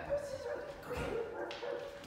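Shepherd doodle puppy yipping and whining in a string of short calls, with a single sharp click about one and a half seconds in.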